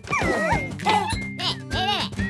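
Cartoon soundtrack music with the baby characters' high-pitched squeals and cries over it.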